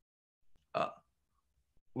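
A man's single short hesitation sound, "uh", about a second in, within an otherwise silent pause in speech.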